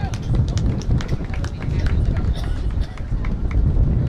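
Sounds of a football play on the field: indistinct shouting voices and a quick run of sharp clicks and knocks, thickest in the first two seconds, over a heavy low rumble.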